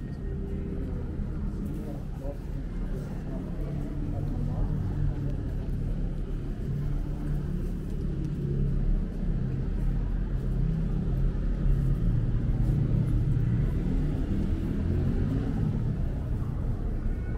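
Town street ambience: a steady low rumble with indistinct voices of passers-by, no single sound standing out.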